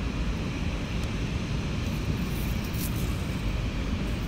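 Steady low rumbling background noise outdoors, with no distinct event standing out.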